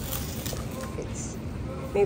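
Low, steady shop background noise with faint voices and light handling sounds; no distinct sound stands out.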